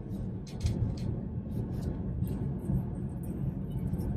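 Steady low road and engine rumble inside a moving car's cabin, with a few brief light rattles.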